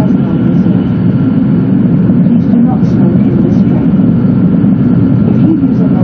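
Steady low running noise inside the cabin of an E2 series Shinkansen car moving along the track.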